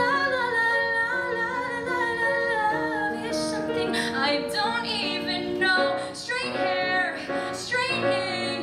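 A woman singing a musical-theatre song with live piano accompaniment, holding long wavering notes.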